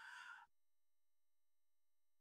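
Near silence: a faint, short noisy sound in the first half second, then only a very faint steady electronic tone.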